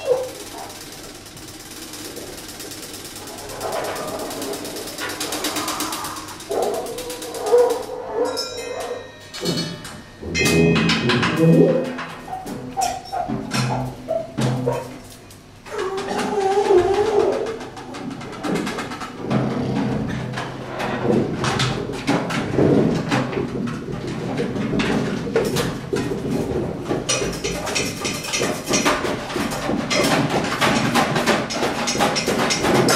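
Live large-ensemble jazz from saxophones, clarinets, brass, double bass and two drummers. It starts sparse and quiet, then from about four seconds in it thickens into overlapping horn lines with scattered percussion knocks and clicks.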